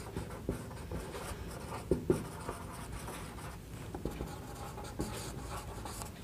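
Marker pen writing on a whiteboard: faint scratchy strokes broken by a few light taps as the letters are formed.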